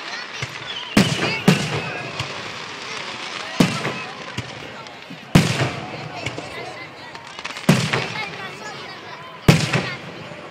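Aerial fireworks shells bursting overhead: about six sharp booms spaced irregularly a second or two apart, each trailing off in a short echo.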